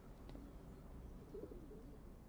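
Faint cooing of pigeons over quiet room tone, with one soft coo about a second and a half in.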